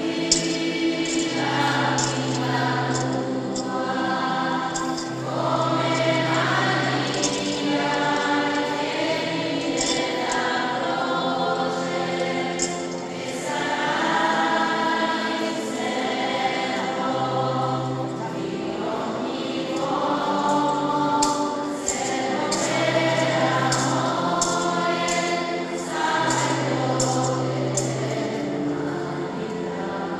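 Small, mostly female church choir singing a hymn to keyboard-organ accompaniment, the organ holding steady bass notes that change every few seconds under the voices.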